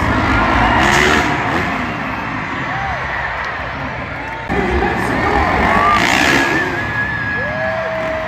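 Loud arena music over crowd cheering, with freestyle motocross dirt bikes revving as riders take the jump ramp. The sound swells suddenly about halfway through.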